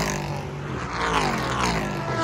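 Race car engines on a road course, several pitched engine notes falling one after another as cars go by and shed speed, with the sound rising and falling without a break.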